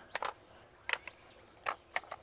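Tomato plant stems and leaves being handled and tied to a polyline string: about half a dozen brief, crisp rustles and clicks spread through a quiet background.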